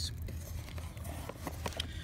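Low steady rumble with a few soft clicks and light water sounds from slushy water stirring around a sonar transducer held in an ice-fishing hole.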